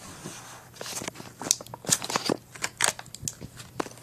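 Irregular clicks and knocks of close handling, as the small plastic and metal parts of a Beyblade spinning top are picked up and moved about. The clicks come thickly from about a second in.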